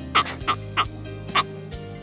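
A woman laughing in about four short bursts over steady background music.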